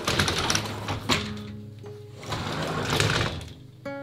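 An aluminium-framed frosted-glass sliding door rattles along its track as it is slid open. It rattles again about two seconds later as it is slid shut. Soft background music plays underneath.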